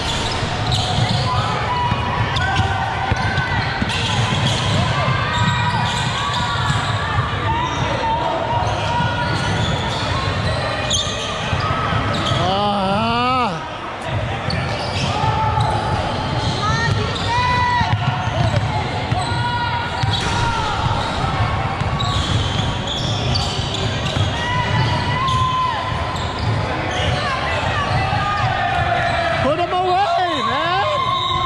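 Game sounds of a basketball being dribbled and bounced on a hardwood gym floor, with players and spectators calling out, echoing in a large hall. There are short squeaky chirps shortly before the middle and again at the very end.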